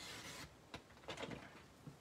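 Sliding blade of a paper trimmer drawn along its track through cardstock, a steady rasp that ends about half a second in. After it come a few light knocks and a click as the trimmer's cutting rail is lifted.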